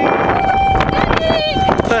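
Strong wind buffeting the microphone, with a person's long, steady, held vocal cry over it that breaks off near the end.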